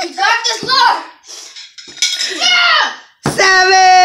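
Children shouting and whooping in quick bursts, then one long, steady, high-pitched yell that starts about three seconds in.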